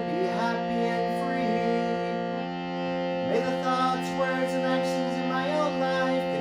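Harmonium playing sustained chords, with the chord changing about two and a half seconds in, under short plucked-string notes.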